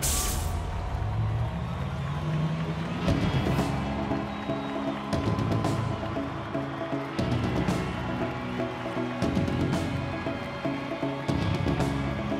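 Live band instrumental music from drums, cymbals and low bass notes. A loud cymbal crash comes at the start, and further crashes follow about every two seconds.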